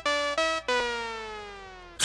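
Electronic music: a few short, clipped synth-keyboard notes, then about two-thirds of a second in a single long note that slides slowly down in pitch and fades away.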